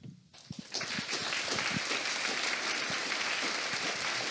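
Audience applauding: a few scattered claps about half a second in, then steady applause.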